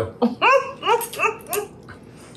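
A dog yipping: about five short, high calls, each rising in pitch, in quick succession.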